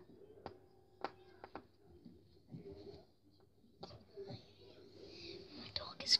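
Faint whining of a dog crying, with a few soft clicks scattered through.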